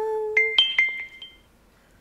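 A short chime sound effect: a held tone, then several quick, bright ringing notes that die away within about a second and a half.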